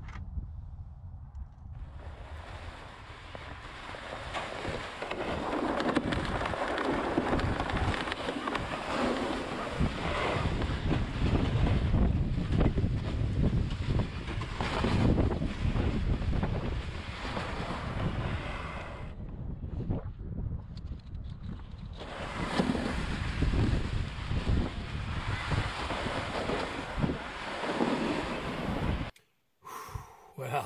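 Wind buffeting the camera's microphone while walking across snowy ice: a loud, rough rushing that breaks off briefly in the middle and again near the end.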